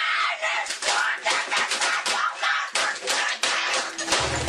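Computer keyboard being hammered with the hands: rapid, irregular clacks and bangs, with a boy's yelling over them.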